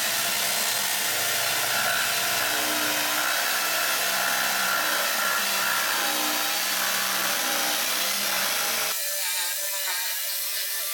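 JCB corded jigsaw cutting through a thick live-edge wooden slab, a loud, steady sawing. About nine seconds in the sound thins out and wavers.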